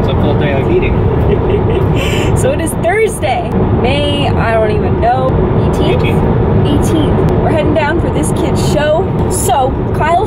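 Steady road and engine noise inside a moving car's cabin, a low rumble that runs on without change.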